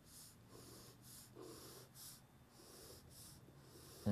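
Very faint scratching of a pencil drawing lines on sketchbook paper: about six short strokes in quick succession.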